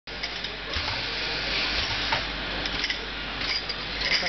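Automatic in-line jar filling machine and conveyor running: a steady machine noise with a low hum and a few short clicks and clinks scattered through.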